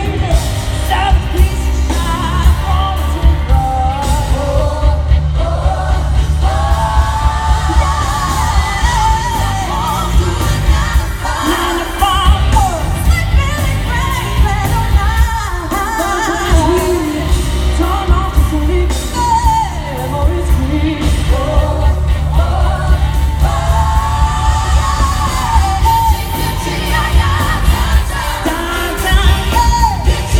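Live pop band performance with a woman singing lead into a microphone over strong bass and drums, playing continuously.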